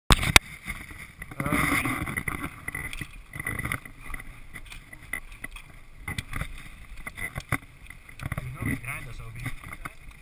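Two sharp clicks at the very start, then a mountain bike on a dirt-and-gravel trail: scattered knocks and rattles of the bike and the helmet camera, over a low rumble of wind on the microphone.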